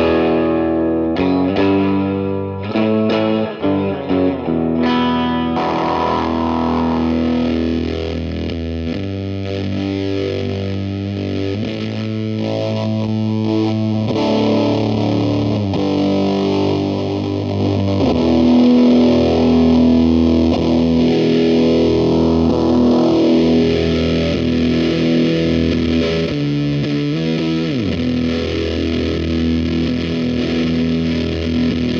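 Electric guitar played loud through a Chase Bliss/Benson Preamp MkII with its fuzz turned fully open, giving a heavy fuzz distortion. A handful of picked chords in the first few seconds give way to long sustained notes, with a downward slide near the end.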